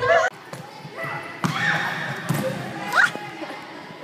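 Children's voices echoing in a school gymnasium, with a short rising shout about three seconds in. Two thuds sound on the hardwood floor about one and a half and two and a half seconds in.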